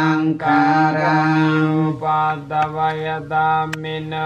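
Buddhist chanting in Pali, voices holding long, steady notes with short breaks between phrases. A brief click sounds near the end.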